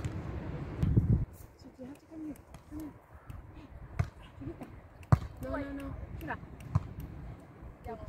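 A beach volleyball struck by players' hands and forearms during a rally: three sharp slaps, the loudest about five seconds in. Faint player voices call across the court.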